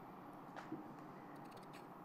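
Faint snipping of fabric scissors cutting the tailor's tack threads between two separated layers of fabric, with one small click about a third of the way in.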